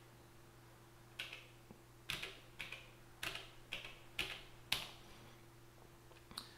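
Plastic step keys on an Elektron Digitone groovebox clicking as they are pressed, about seven taps at an uneven pace, entering steps into its sequencer. A faint steady hum sits underneath.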